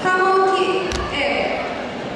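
Voices calling out, held and pitched, then a single sharp thump about a second in, typical of bare feet stamping on a taekwondo mat as a poomsae team moves into its first stance.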